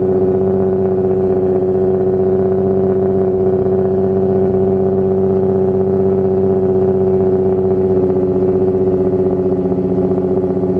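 Nissan 350Z's 3.5-litre V6 idling steadily through its exhaust shortly after a cold start, with no revving.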